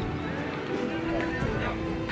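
Many voices talking at once, with music over them.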